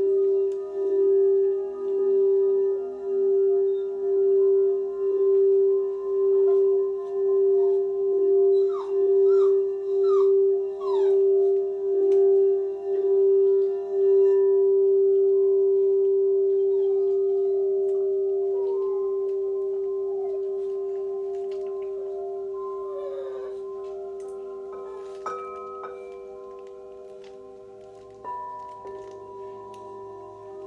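Crystal singing bowl rubbed around its rim, one steady ringing tone that swells and dips about once a second, then left to ring and slowly fade from about halfway, and sounded again near the end. Short high squeals from a baby come in over it now and then.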